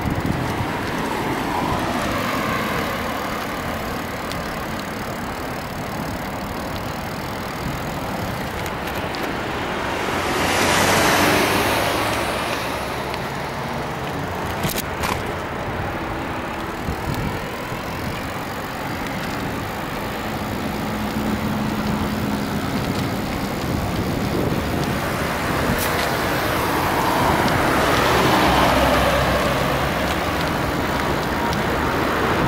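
Road traffic beside a moving bicycle: steady road noise, with two vehicles passing close by, swelling and fading, one about a third of the way through and one near the end.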